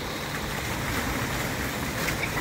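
Fountain water jet falling into a shallow pool, a steady splashing rush.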